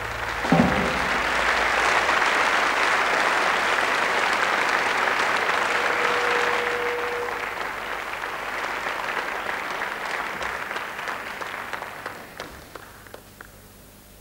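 Audience applauding as a jazz trio's tune ends. The applause rises right after a last accented note from the band about half a second in, then thins out to scattered claps near the end.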